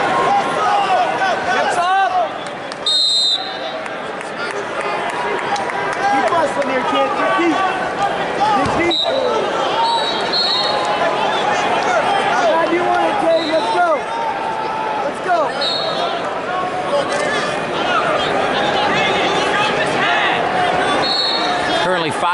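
Busy arena crowd at a wrestling meet: many voices shouting and talking over one another, with a few short high-pitched squeaks scattered through and a single sharp slap about nine seconds in.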